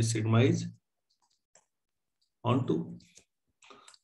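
A man speaking Hindi, then a pause with a few faint clicks of a pen stylus on a tablet as he writes, and a short burst of speech about halfway through.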